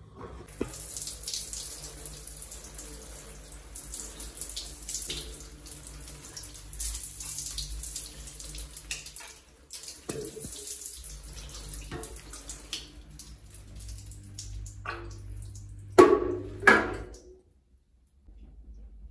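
Water running from a kitchen tap into the sink, splashing unevenly, with two loud knocks near the end.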